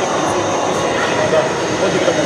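A man speaking over a steady background rush.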